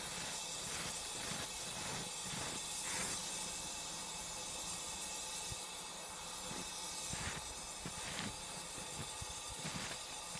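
Isobutane rushing out of a can through the open tube of a Green Machine butane dispenser: a steady hiss of escaping gas.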